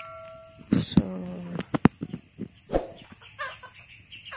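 Chickens calling: a long held call ends in the first moment, then short clucks follow, mixed with a few sharp clicks.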